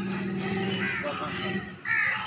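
A small puppy crying with high yelps, the loudest yelp coming near the end, over a person's voice.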